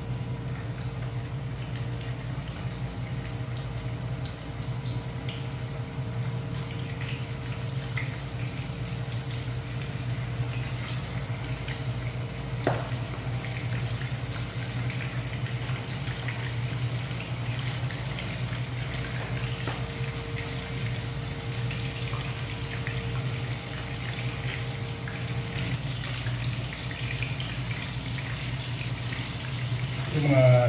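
Breaded chicken pieces deep-frying in hot oil in a pan: a steady sizzle with scattered small crackles, over a constant low hum. A single sharp click stands out near the middle.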